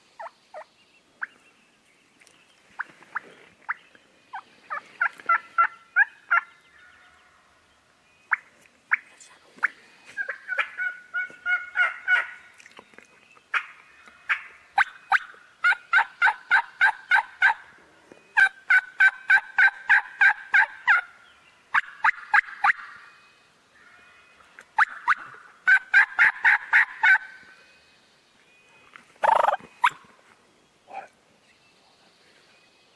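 Rio Grande wild turkeys gobbling: a dozen or so bursts of rapid rattling notes in a row, loudest through the middle of the stretch, with a short harsh burst near the end.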